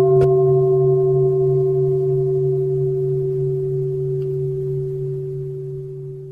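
A struck Buddhist bell: one long ringing tone with a low hum beneath it, slowly fading. It marks the close of one sutra chapter before the next begins.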